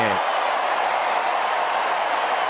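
Large ballpark crowd cheering and applauding, steady, as the home team's base hit breaks up a perfect game.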